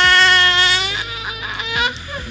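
A baby girl's long, high-pitched vocal squeal, loudest at the start and ending about a second in, followed by a few shorter, softer sounds.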